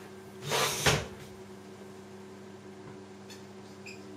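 A brief rustling scrape ending in a click about half a second in, as a dry-erase marker is taken up. Near the end come a couple of faint short squeaks of the marker starting to write on a whiteboard, over a steady low electrical hum.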